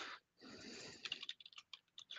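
Computer keyboard being typed on: a soft hiss in the first half, then a quick run of light key clicks in the second half.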